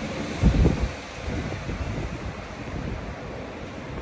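Wind buffeting the microphone: a low, uneven rumble with a strong gust about half a second in.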